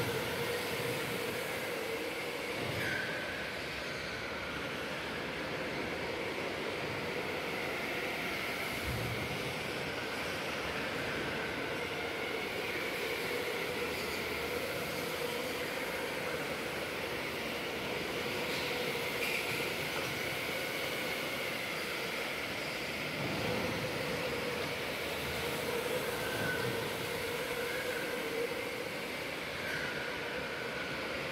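Electric go-karts lapping an indoor track: a steady high motor whine that drifts up and down in pitch as the karts speed up and slow for the corners, over a continuous hiss of tyres on the concrete.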